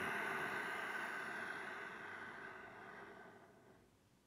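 One long, slow breath, close to a headset microphone: a steady airy hiss that fades gradually and stops shortly before the end, as the breath is held in kumbhaka (breath retention).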